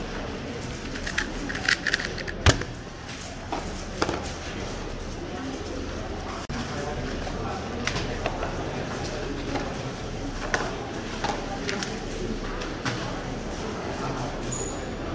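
Scattered sharp plastic clicks and taps from a 2x2 speed cube and stackmat timer being handled, the loudest about two and a half seconds in, over the steady chatter of a busy hall.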